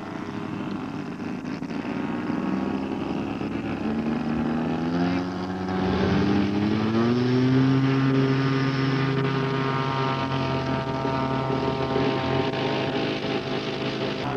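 Radio-controlled model airplane's engine running up for takeoff. Its pitch climbs over about three seconds starting around four seconds in, then holds high and steady at full power through the takeoff run.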